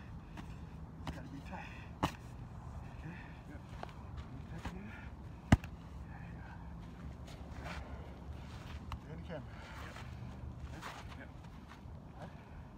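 Boxing gloves hitting an Everlast strike shield held against the body: scattered softer hits, a sharp smack about two seconds in and a much louder one at about five and a half seconds.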